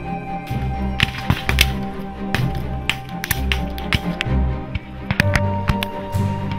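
Background music with held tones and a low pulsing beat about every 0.8 s, with scattered sharp cracks over it at irregular moments.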